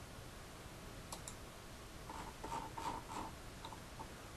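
Faint computer mouse clicks over quiet room noise, with a few soft short blips of tone in the second half.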